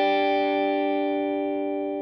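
Electric guitar chord from a Fender Stratocaster, driven through a Vemuram Jan Ray overdrive pedal into a Fender Deluxe Reverb amp, ringing out and slowly fading.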